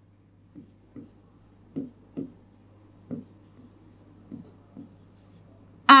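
Stylus writing on an interactive touchscreen board: a scattering of faint taps and short strokes, about eight in all, as the letters are drawn. A low steady hum runs underneath.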